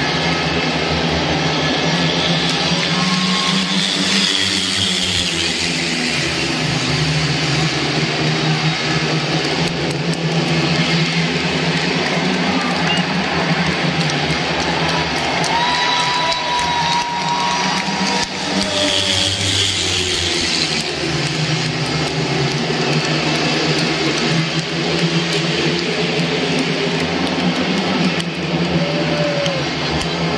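Four 500 cc single-cylinder speedway motorcycles racing, a dense, continuous engine din that shifts in pitch, over the noise of a large stadium crowd.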